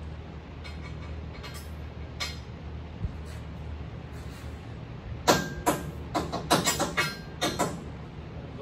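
Metal tools and parts clanking against the steel truck frame, a quick run of about eight sharp knocks starting about five seconds in, over a steady low hum.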